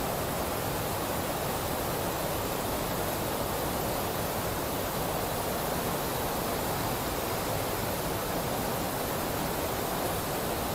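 Steady rushing water, an even noise that does not change.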